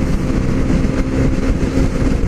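Steady wind rush and motorcycle engine drone at freeway speed, heard from a microphone inside an Icon Airflite full-face helmet, with a faint steady low hum running under the noise.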